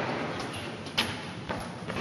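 Footsteps on the concrete floor of an underground car park: two sharp steps about half a second apart, ringing in the enclosed space.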